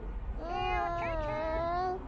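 A baby fussing: one long whining cry that starts about half a second in, slides up in pitch at the start, then holds steady before breaking off just before the end.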